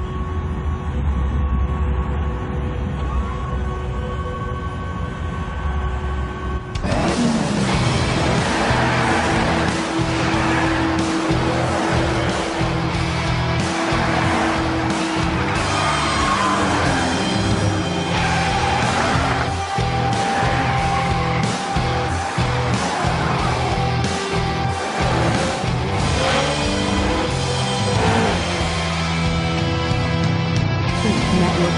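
Cartoon soundtrack music: a low droning build-up, then about seven seconds in a loud, driving score with a steady beat kicks in, mixed with race car engine and tyre sound effects.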